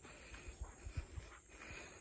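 Faint footsteps and handling bumps of someone walking on a dry grassy slope, a few irregular low thuds, over a faint, steady, high-pitched drone of insects.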